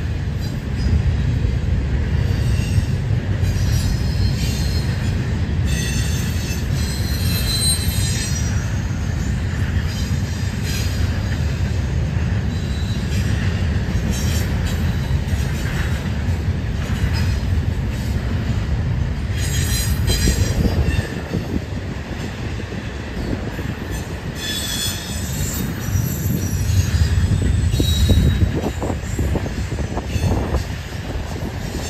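Norfolk Southern double-stack intermodal train rolling past: a steady low rumble of the railcars, with short high-pitched wheel squeals coming and going throughout.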